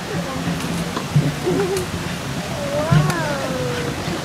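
Indistinct murmur of people's voices along a busy outdoor path, with one drawn-out call that rises and falls in pitch about three seconds in.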